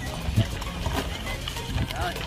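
A loaded collapsible folding wagon being pulled over dirt, its wheels rolling with a low rumble and a few irregular knocks as it bumps along.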